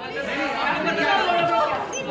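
Several people talking at once, their voices overlapping in excited chatter.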